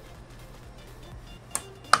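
Two sharp clicks near the end, the second louder, as a hard drive in 3D-printed plastic brackets is pressed and shifted into place in a steel computer case. Quiet background music plays throughout.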